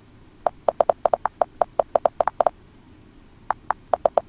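Typing on a computer keyboard: a quick run of about fifteen keystrokes over two seconds, a pause of about a second, then three more keys near the end.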